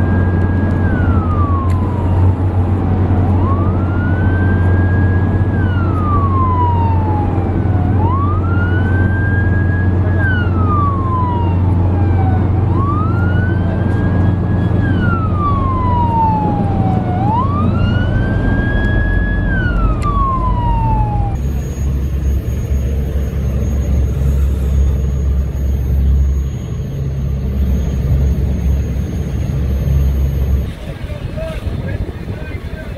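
Coast guard patrol boat siren wailing in a slow cycle, each wail rising quickly, holding, then sliding down, about every four seconds, over a steady low rumble. The siren stops about two-thirds of the way through, leaving the rumble.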